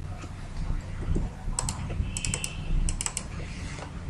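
Quick, sharp clicks of computer input devices, in small clusters of two or three, about a second and a half in and again from about two to three seconds in, over a low steady hum.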